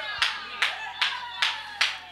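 Hands clapping in a steady rhythm, five claps at about two and a half a second.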